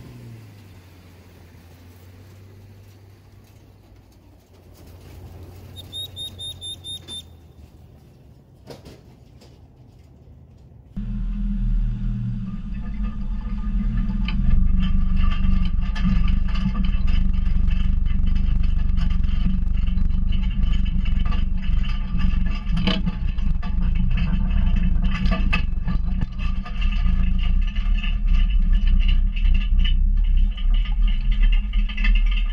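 Ford Ranger pickup's 3.0-litre V6 engine towing a loaded pontoon-boat trailer away, at first faint and steady, then from about 11 seconds in much louder: a steady low rumble.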